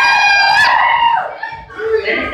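A long, high-pitched scream, held for just over a second with a brief upward break near its end, then softer voices.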